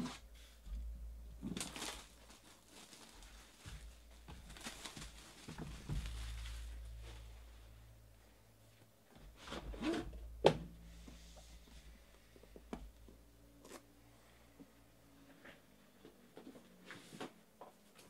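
Packaging on a card box being cut, torn and peeled away, with rustling and scraping as the aluminium card case is slid out of its cardboard sleeve. The case lands with a sharp knock about ten seconds in, followed by light taps and clicks as it is handled.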